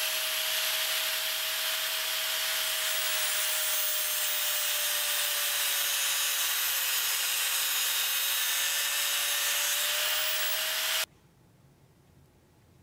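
Angle grinder running, its abrasive disc grinding a metal clipper handle: a steady motor whine over a hiss of grinding. The pitch sags slightly through the middle and comes back up near the end. It cuts off abruptly about eleven seconds in.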